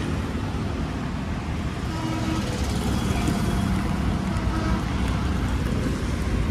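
Steady low rumble of motor traffic.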